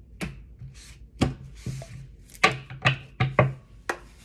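Tarot cards being knocked and set down on a wooden tabletop: about six sharp, irregular taps, with a short sliding rub in the middle.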